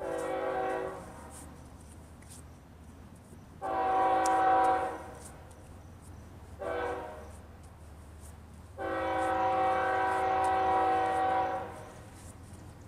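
BNSF freight locomotive air horn sounding the grade-crossing signal as the train approaches: two long blasts, a short one, then a final long blast held about three seconds.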